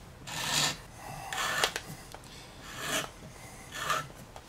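Hand-turned wood-threading tap cutting threads into a drilled wooden block: scrapes of wood being cut, about one a second as the handle is turned, with a few sharp clicks near the middle.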